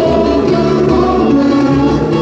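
Live samba-enredo sung by a group of male and female singers together into microphones, amplified through a PA over the band.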